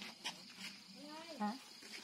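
Brief, low talk of people close by, over a steady high-pitched chirring of night insects such as crickets.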